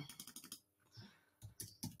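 Faint keystrokes on a computer keyboard as text is typed: a scatter of light taps, several in the first half second and a short run near the end.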